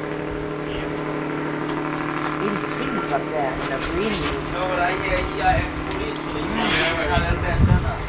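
An engine running steadily, a low even hum with no change in pitch.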